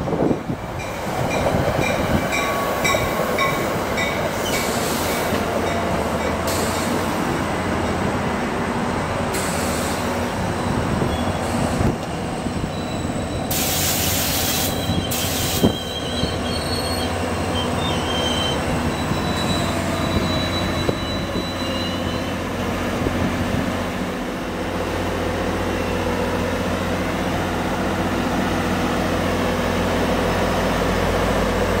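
Diesel-pushed push-pull commuter train rolling slowly past, wheels squealing as it slows into the station, with crossing-signal bells dinging evenly for the first few seconds. From about 24 s the GP38 diesel locomotive at the rear draws level and a steady low engine drone takes over.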